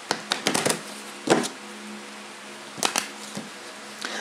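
Tarot cards being handled and shuffled on a cloth-covered table: a series of short, irregular clicks and slaps as the stacks are tapped and pushed together, over a faint steady hum.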